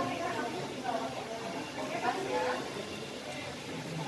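Quiet, indistinct voices of several people talking in the background, with no one speaking close by.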